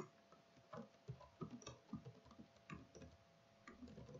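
Faint, irregular clicking of computer keyboard keys being typed.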